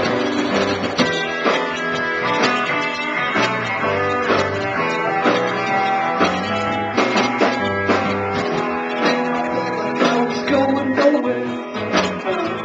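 A live band playing an instrumental passage with no vocals: electric guitar strummed in regular chords over sustained bass-guitar notes.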